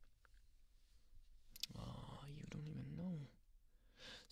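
A man's quiet, wordless hum or murmur, its pitch rising and then falling, with a soft click near its start.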